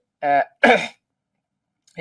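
A man clears his throat in two short rasping bursts within the first second.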